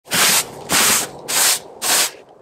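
Long-handled brush sweeping snow off a fabric boat cover in four quick, evenly spaced strokes, a little under two a second.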